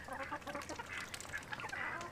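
Backyard flock of ducks and chickens, with the ducks giving short, scattered quacks.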